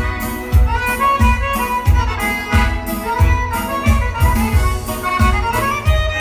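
Instrumental dance-band music led by a button accordion playing a melody, over a steady bass-drum beat.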